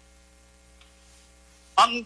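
Faint, steady electrical hum on the recording during a pause in speech; a voice starts talking near the end.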